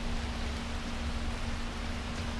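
Steady hiss with a faint constant hum and low rumble underneath: background noise with no distinct event.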